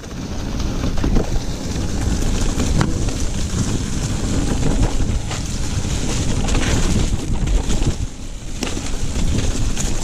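Mountain bike rolling over a rocky trail of dead leaves and snow: a steady rumble of tyres and rattling bike, with a few sharp knocks over rocks, and wind buffeting the microphone.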